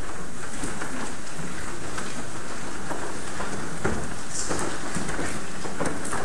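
Indistinct murmur of a congregation talking and moving about in a church sanctuary, with scattered footsteps and shuffling, heard as a steady noisy wash.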